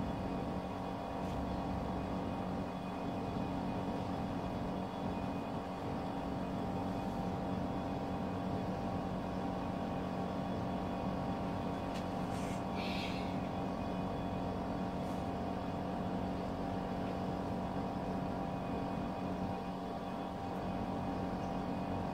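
A steady machine hum, like a motor or engine running, holding several constant tones without change. A short hiss is heard about halfway through.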